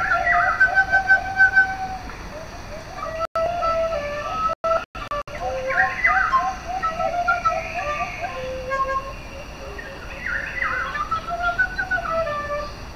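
A small handheld flute played in rapid warbling trills and quick sliding, bird-like chirps. The sound cuts out briefly a few times a little before the middle.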